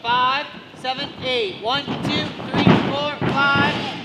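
A coach shouting out dance counts in a steady rhythm for a tumbling drill, with a burst of noise like a tumbler landing on the mat about two and a half seconds in.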